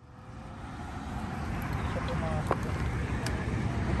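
Steady rumbling road and wind noise of travelling along a road, fading up over the first second after a break in the sound, with a few faint clicks.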